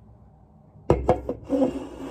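An aluminium soda can knocking and rubbing against the phone's microphone as it is pushed up close to the lens: a few sharp knocks about a second in, then a scraping rustle.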